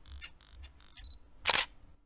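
Camera shutter sound effect: a run of softer mechanical clicks, then one sharp, loud shutter click about one and a half seconds in.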